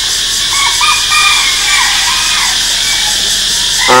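Steady hiss of an old analogue video tape recording, with a few faint short high chirps behind it.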